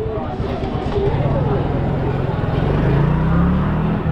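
A road vehicle's engine running close by, a low steady hum that grows a little louder from about a second in and rises slightly in pitch near the end, with voices in the background.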